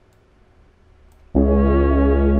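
Quiet for about a second, then beat playback starts suddenly: a sustained synth pad chord with deep bass underneath, held steady.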